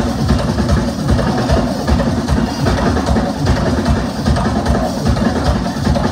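Live band music driven by a drum kit and percussion, loud and fast-beating, with dense low drum strikes throughout.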